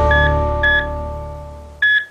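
Closing chord of a news bulletin's theme music, held and fading away, with three short electronic beeps over it; the last beep, near the end, is the loudest.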